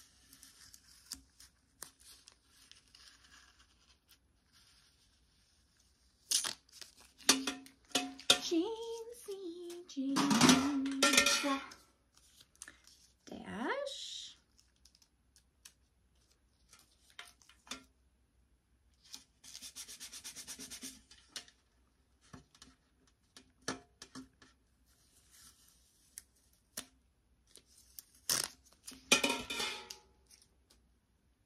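Paper crinkling and tearing in short bursts with small clicks of handling, loudest about ten seconds in and again near the end, as paper is handled and a small label is peeled from its backing.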